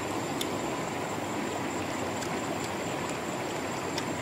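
Steady rushing of a shallow rocky river running over stones, with a few faint short clicks.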